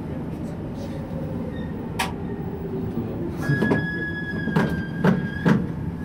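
Low, steady rumble of a subway train creeping slowly along a station platform. There is a sharp click about two seconds in, and a steady high-pitched tone lasts about two seconds from around halfway.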